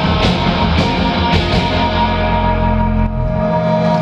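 Live rock band of electric guitars, bass and drums playing loud through a club PA, with drum hits in the first couple of seconds. The band then lets a chord ring on over the closing bars of the song.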